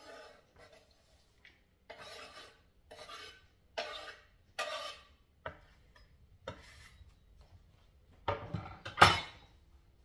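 A knife blade scraping chopped parsley off a wooden cutting board into a plastic bowl, in several short strokes about a second apart. Near the end comes a louder clatter as the wooden board and knife are set down on the counter.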